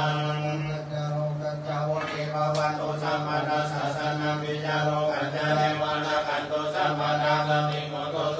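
Pali Buddhist chanting by a group of voices in unison, held on one steady low reciting pitch with short breaks for breath.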